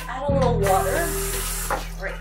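Guitar background music with a voice over it, and a hiss that sets in about half a second in and lasts just over a second.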